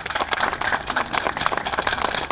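Audience applauding: many hands clapping in a dense, irregular stream.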